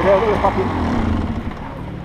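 Enduro dirt bike's engine idling steadily at low revs after being revved, with a short word spoken at the start.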